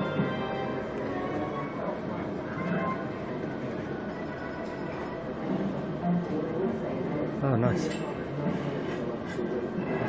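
Electronic slot machine in a betting shop playing its game sounds during free spins: musical jingles and chiming win tones as the reels stop, loudest in the first few seconds.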